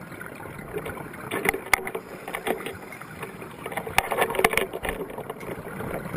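Underwater recording of a scuba diver's exhaled regulator bubbles, heard as two crackling bursts of bubbling about a second and a half in and again around four seconds in, over a steady underwater hiss.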